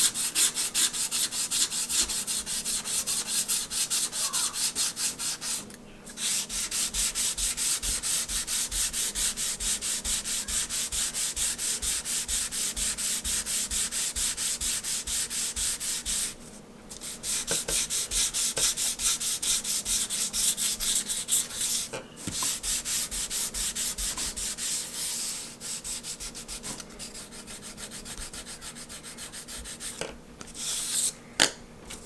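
Hand sanding block rubbed quickly back and forth over a model glider wing panel, several strokes a second, smoothing and feathering the surface. The strokes stop briefly about six, seventeen and twenty-two seconds in, and grow lighter near the end.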